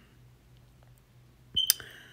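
A metal spoon clinks twice against a dish, with a brief high ring, about one and a half seconds in. Otherwise only a faint steady hum.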